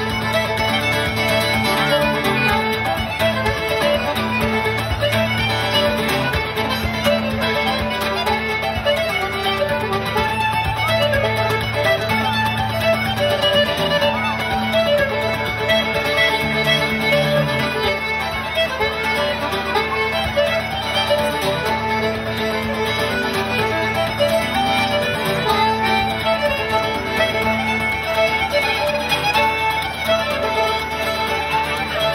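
Live acoustic trio of fiddle, accordion and acoustic guitar playing a traditional tune together, the fiddle carrying the melody over steady guitar accompaniment.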